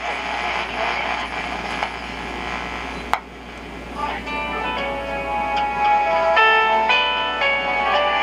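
Restored vintage tube radio playing through its speaker, now working: about three seconds of hissy, static-laden sound, a sharp click, then music with held notes comes through clearly.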